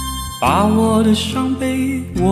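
A Mandarin pop ballad playing: steady accompaniment, with a voice starting to sing about half a second in.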